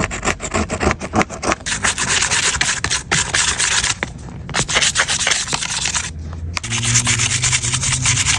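Scraping and stiff-bristled brushing along the edge of an iPad's aluminium frame, clearing broken screen debris: quick rasping strokes with a few short pauses.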